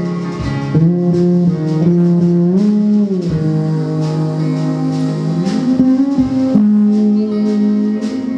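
Live guitar instrumental passage: long held notes that bend and slide up in pitch, over acoustic guitar playing.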